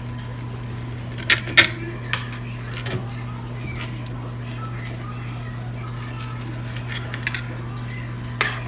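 A few short clicks and taps as raw sausages are cut open by hand on a glass cutting board, over a steady low hum.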